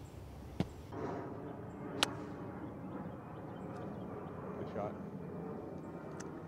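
A sharp single click about two seconds in, the crack of a golf club striking the ball, with a lighter tap before it and faint voices in the background.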